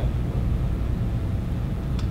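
Steady low rumble of room air-conditioning, with no other sound standing out.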